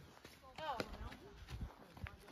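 Quiet footsteps on dry, sandy dirt, a few soft scuffs, with a faint voice calling about half a second in.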